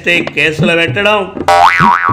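A man's voice talking in a comic manner, and about one and a half seconds in a cartoon 'boing' sound effect whose pitch swoops up, down and up again.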